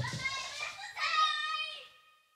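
Excited children's voices: quick high-pitched exclamations, then one child's high call held for most of a second near the end.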